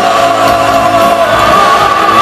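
Heavy metal band playing live, with electric guitars, bass and drums under a long held sung note.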